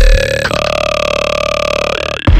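Dubstep track in a breakdown: about half a second in, the bass and beat drop out, leaving one long burp-like growl whose tone wavers slowly, cut off shortly before the end.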